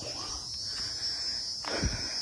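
Steady high-pitched insect chorus in the forest, with a short low rumble near the end.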